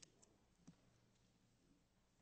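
Near silence: faint room tone with a few soft clicks in the first second.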